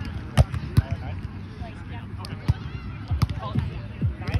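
A volleyball being struck by players' forearms and hands during a rally on grass, heard as sharp slaps. The two loudest come close together about half a second in, with a few more later.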